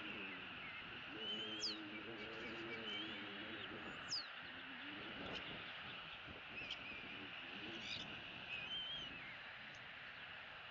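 Birds chirping outdoors: scattered short chirps and a few sharp whistles that sweep quickly downward, over a steady background hiss.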